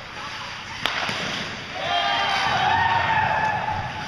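Ice hockey play in an echoing rink: one sharp clack about a second in, then a player's long, drawn-out shout over steady rink noise.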